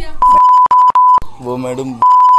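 Censor bleep: a loud, steady high tone in three quick back-to-back pieces masking words in a shouted argument, followed by a voice talking near the end.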